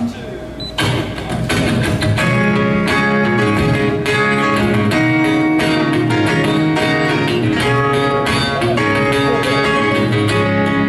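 Solo acoustic guitar playing a song's instrumental intro, coming in about a second in and then picked and strummed steadily.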